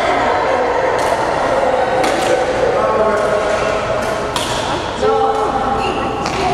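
Voices talking in an echoing gym hall, with four or so sharp clicks of badminton rackets hitting the shuttlecock.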